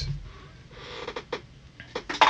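Faint rustling with a few small clicks, the clearest two near the end: a person rummaging for markers.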